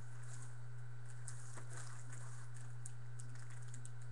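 Faint, scattered light clicks and ticks over a steady low hum, with no voice.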